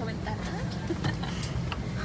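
Steady low hum inside an airliner cabin at the gate, with faint passenger voices and a few light clicks over it.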